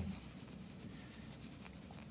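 A terry cloth rubbed back and forth over a stainless steel watch case to work in metal polish: a faint, steady rubbing.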